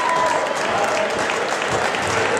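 Crowd applauding and cheering around a fight cage, with voices calling out over it.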